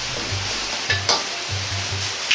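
Deep-fried tofu pieces sizzling in hot oil in a wok while being stirred with a metal ladle, with a sharper scrape of the ladle against the wok about a second in.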